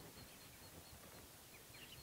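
Near silence: outdoor background with a couple of faint, brief bird chirps, one near the start and one near the end.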